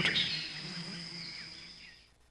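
Natural outdoor ambience of birds and insects, with a thin steady high-pitched insect-like tone and a faint chirp, fading away to silence.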